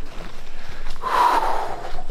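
A man breathing out hard in one long, noisy exhale about a second in, a winded sigh from the exertion of hiking.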